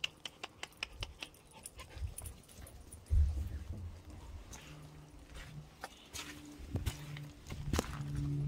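A dog's low, drawn-out whine in the second half, over small clicks and scuffs of steps on sandy, gravelly ground and one heavy thump about three seconds in.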